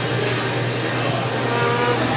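Restaurant background noise: a steady low hum with a haze of distant chatter, and a faint voice in the second half.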